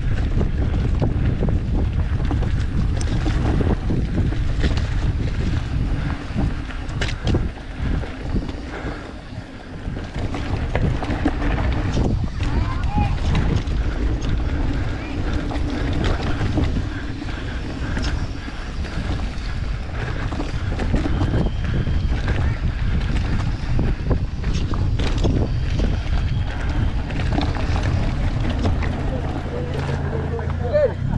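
Wind buffeting a mountain biker's camera microphone and tyres rumbling over a dry dirt trail on a fast descent, with frequent knocks and rattles from the bike as it hits bumps.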